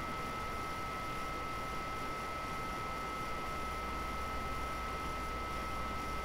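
Room tone between speech: a steady hiss with a low hum underneath and two thin, constant high-pitched whines.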